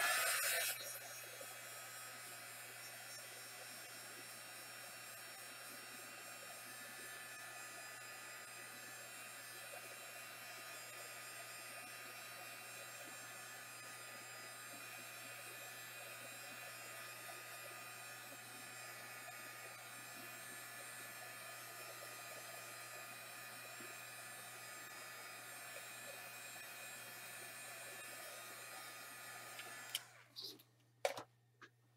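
Handheld hot-air dryer running steadily, its motor hum and rushing air drying wet acrylic paint.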